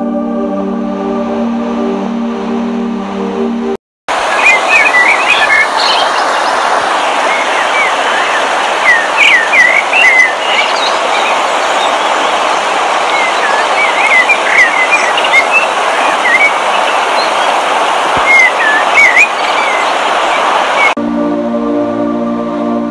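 Steady rushing of a waterfall with birds chirping over it in quick short runs. It is framed by ambient music with sustained chords, which cuts out about four seconds in and comes back near the end.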